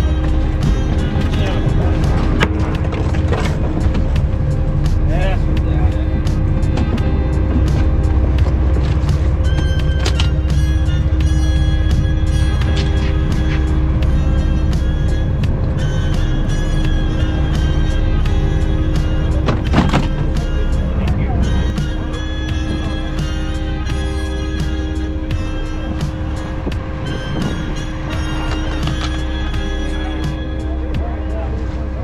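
Background music over a steady low rumble.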